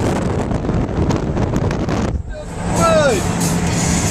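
Wind rushing and buffeting over the microphone of a phone held at the open window of a moving car, with road and engine noise under it. The noise dips briefly about halfway through. Near the end there is one short sound that falls in pitch.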